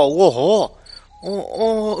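A man's voice drawing out 'oh, oh' with a strongly wobbling pitch, then after a short gap a steadier held 'aw' sound.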